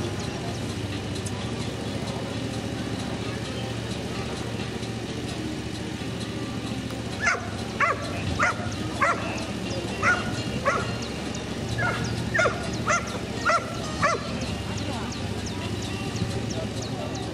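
Belgian Malinois barking at the hooded helper: a series of about a dozen short, sharp barks beginning about seven seconds in, over a murmur of background voices.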